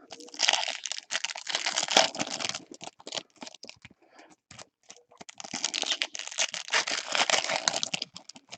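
Trading-card pack wrapper crinkled and torn open by hand, in two long bouts of crackling: the first starts just after the beginning and the second starts a little past halfway.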